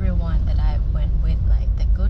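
A woman talking inside a moving car, over the steady low rumble of the car heard from within the cabin.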